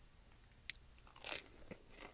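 Faint mouth sounds of a person biting into and chewing a soft garlic cheddar knot: a few brief, quiet clicks and smacks.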